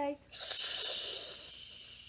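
A person shushing: a long 'shh' that begins just after a sung word and slowly fades away.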